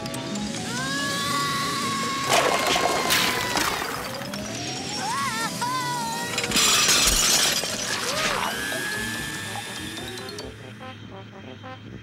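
Cartoon background music with comedy sound effects. Two loud crashes with shattering, as of breaking dishes, come about two seconds in and again past the middle.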